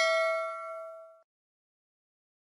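A notification-bell 'ding' sound effect: one struck chime, already ringing, with several clear overtones. It dies away about a second in.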